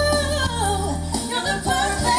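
Women singing a slow love song into microphones over musical accompaniment, heard through a live stage sound system, with long held notes that waver in pitch.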